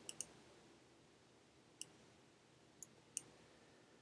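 A few faint computer mouse clicks in near silence: two in quick succession at the start, one a little before two seconds in, and two more around three seconds in.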